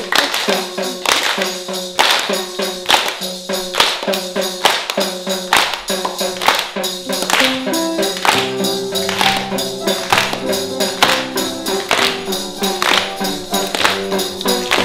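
An audience claps and beats children's percussion instruments in a steady waltz rhythm while a piano plays along. The piano part grows fuller and more melodic about halfway through.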